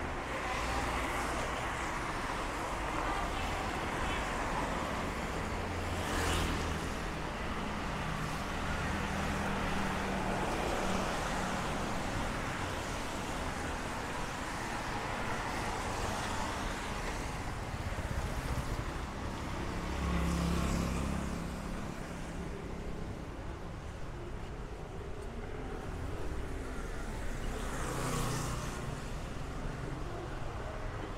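Road traffic on a city street: a steady wash of passing vehicles, with individual vehicles going by louder about six seconds in, around twenty seconds in, and near the end.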